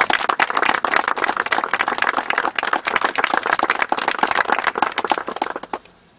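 A gathering of people applauding: dense clapping that begins right away and dies out near the end.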